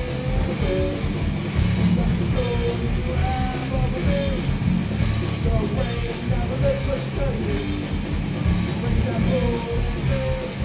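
Live rock band playing at a steady loud level: electric guitars and drums, with a voice singing over them.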